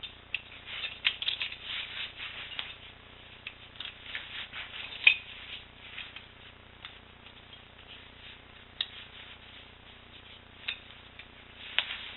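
Handling noise from a cloth belt being wrapped around the chest and adjusted over a T-shirt: fabric rustling with scattered light clicks and rubs, one slightly sharper click about five seconds in and a few more near the end.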